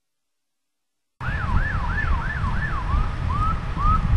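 Emergency vehicle siren on a fast yelp, sweeping up and down about three times a second, cutting in suddenly about a second in. Near the end the sweeps break into shorter rising chirps, over a low rumble.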